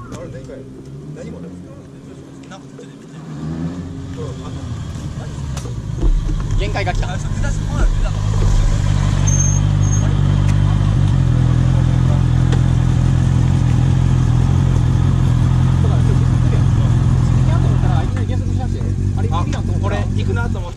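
A motorcycle engine grows louder as the bike comes up close, with a couple of short surges, then idles steadily right beside the microphone for about ten seconds.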